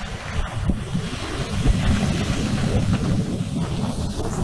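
Strong wind buffeting the microphone in an uneven, gusting rumble, with surf breaking behind it.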